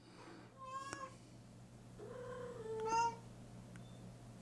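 A house cat meowing twice: a short meow about a second in, then a longer, drawn-out meow that rises in pitch at its end, about three seconds in.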